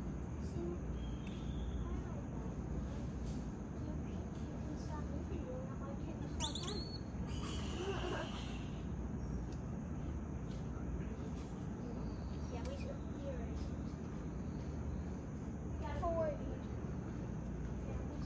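Tropical forest ambience: a steady high-pitched insect drone over a low rumble, with a few faint short calls about six to eight seconds in and again near sixteen seconds.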